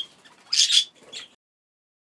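Budgerigar giving a harsh, high-pitched squawk about half a second in, followed by a shorter, fainter call.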